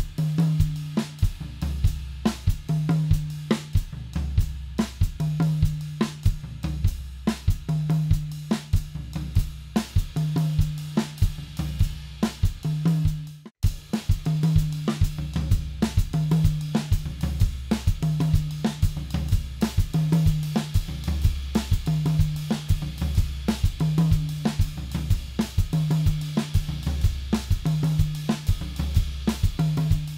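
Tama Starclassic drum kit with Meinl Byzance hi-hats playing a 6/8 Naningo groove open-handed, with the left hand on the hi-hat, the right hand across snare, rack tom and floor tom, and the bass drum and hi-hat foot keeping the pulse. It runs as a steady, repeating one-bar pattern with a momentary dropout about 13 seconds in.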